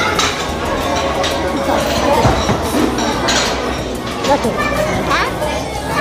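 Restaurant dining-room hubbub: many overlapping background voices talking at once, with a few short clinks of cutlery on a plate.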